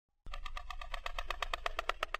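Logo-animation sound effect: a rapid, evenly pulsing tone, about ten pulses a second, over a low rumble, starting suddenly about a quarter second in.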